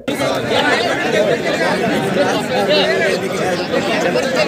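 Crowd chatter: many men's voices talking over one another at once, steady and unbroken.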